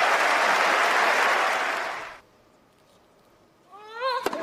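Tennis crowd applauding, cut off abruptly about two seconds in. Near quiet follows, then a brief rising voice near the end.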